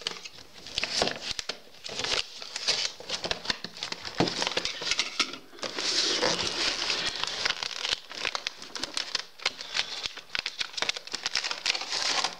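Cardboard retail box and its inner packaging being opened and handled by hand: crinkling and rustling with many small clicks and taps.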